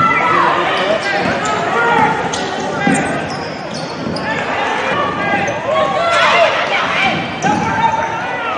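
Live court sound of a basketball game in a large, mostly empty arena. A ball is being dribbled and bounced on the hardwood, with short knocks scattered through, and sneakers squeak on the floor now and then, most busily near the end.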